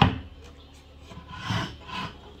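Wooden shoe bench being moved into place on the floor: a sharp wooden knock at the start, then a brief scrape about a second and a half in.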